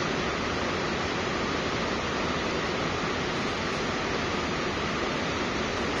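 Steady, even hiss with no other sound: the recording's constant background noise.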